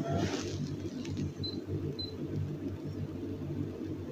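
Faint, steady low background hum and room noise in a pause between spoken phrases.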